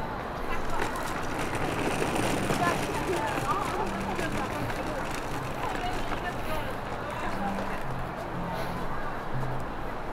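Indistinct voices of people talking, with music playing in the background in short steady low notes.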